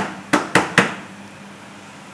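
Four sharp knocks in quick succession within the first second, something hard rapped against a hard surface, then only a low steady room sound.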